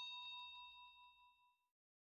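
Bell-like notification ding sound effect of a subscribe-button animation, struck just before and ringing on in several tones as it fades out about a second and a half in.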